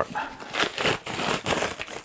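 White packing wrapping being pulled open and crumpled by hand, an uneven run of crinkling and rustling as toys are unwrapped.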